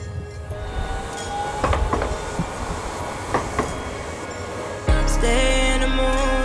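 A low rumbling noise with a few sharp knocks and a faint rising tone. Background music comes in about five seconds in.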